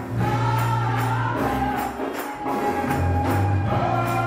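Gospel choir singing with a band: held sung notes over low bass notes, with percussion keeping a steady beat.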